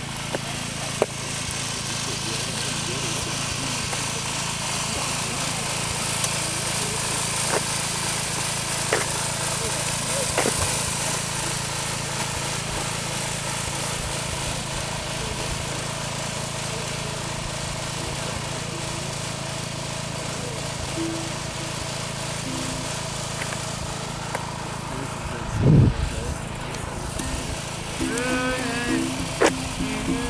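Steady drone of a vehicle engine and road noise, with a brief loud low rumble near the end followed by voices.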